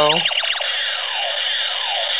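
Toy laser gun playing its electronic sound effect: many rapid falling pitch sweeps layered over a steady high buzz.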